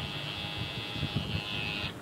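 Electric tattoo machine buzzing steadily while the artist touches up a few small white spots in a nearly finished black tattoo; the buzz cuts out for a moment near the end and starts again.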